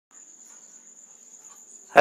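A faint, steady, high-pitched whine held on one pitch over low background hiss. A man's voice begins right at the very end.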